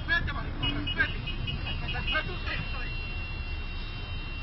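Street scene: indistinct voices over steady traffic rumble. A high-pitched beep pulses rapidly for about two seconds and then holds as a steady tone.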